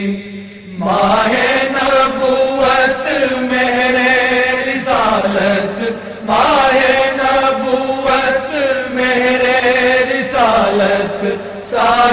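Unaccompanied devotional naat chanting: a voice holds long, wavering notes, each phrase opening with an upward glide, after a brief pause just under a second in.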